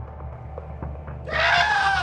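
A short, loud, high-pitched scream starts about a second and a quarter in, lasts under a second and falls slightly in pitch at the end. It sounds over a quiet music bed.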